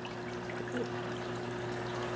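Reef aquarium equipment running: a steady trickle of flowing water over a low, even pump hum.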